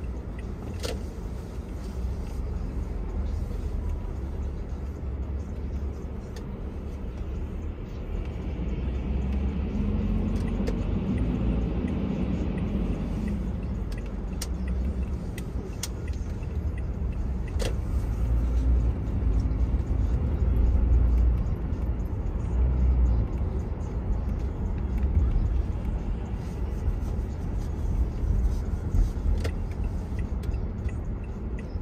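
Car driving in city traffic: a steady low road and engine rumble that swells louder partway through, with a few sharp ticks. A bus's engine hum rises alongside about ten seconds in.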